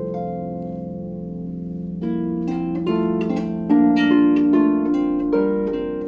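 Solo lever harp: plucked notes left ringing and fading for about two seconds, then a flowing run of plucked melody and chords, louder toward the middle.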